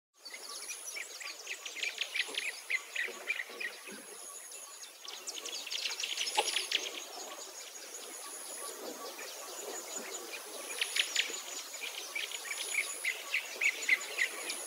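Outdoor nature ambience of many birds chirping rapidly, with a thin, very high note that repeats every couple of seconds, like an insect or bird trilling.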